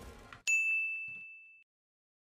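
A single bright, bell-like ding that fades out over about a second. It is the editor's sound effect marking a pause, as the on-screen pause counter ticks up. Just before it, the anime episode's soundtrack cuts off suddenly.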